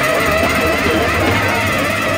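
Early-1970s psychedelic jazz recording playing: a dense band texture of electric piano, synthesizer, electric guitar and bass, with a steady low bass line underneath.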